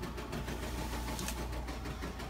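Embroidery machine stitching out a patch: a steady run of rapid needle strokes over a low motor hum.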